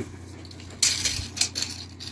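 Steel tape measure being pulled out along a timber beam: a short metallic rattle and scrape of the blade, about a second in and lasting under a second.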